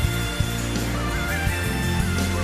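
Instrumental music: sustained low notes under a high melody of short trilled turns.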